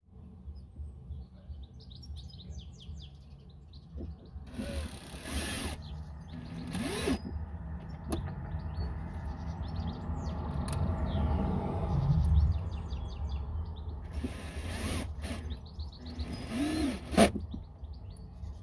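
Birds chirping, with a steady low rumble underneath. Four short bursts of rustling noise, two about a third of the way in and two near the end.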